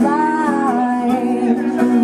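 A young woman singing live into a microphone, accompanied by her own acoustic guitar. She holds a long note that steps down in pitch just under a second in, then carries on over the guitar's steady lower notes.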